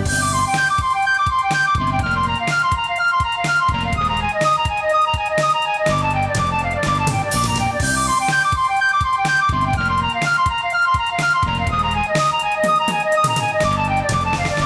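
Live rock band playing an instrumental passage: a keyboard plays quick runs of notes over bass and a steady drum beat.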